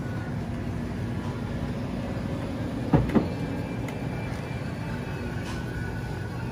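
Steady low rumble of supermarket background noise beside the refrigerated dairy cases, with two quick sharp knocks close together about three seconds in.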